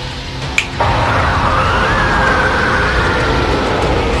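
Cartoon energy-blast sound effect: a loud, dense rushing roar that cuts in suddenly about a second in, with a faint high tone rising and then falling over it. It starts over a few held music notes.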